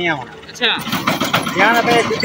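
A man's voice speaking, with short pauses between phrases.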